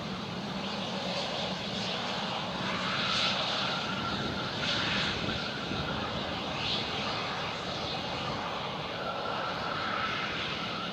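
Dassault Falcon 7X's three Pratt & Whitney Canada PW307A turbofans running during the landing roll, a steady jet rush that swells about three and five seconds in. A thin steady whine comes in about three seconds in and again near the end.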